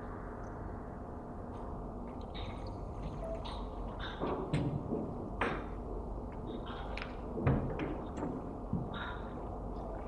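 Room tone in a meeting room: a steady low hum with a few faint knocks and clicks scattered through the second half.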